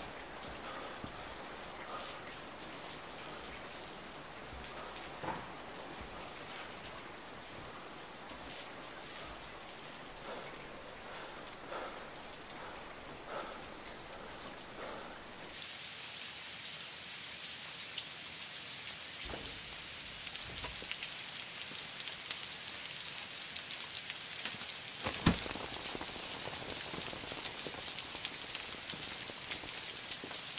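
Steady rain falling with scattered drip ticks. About halfway through it abruptly becomes louder and hissier, and a single sharp knock near the end stands out as the loudest sound.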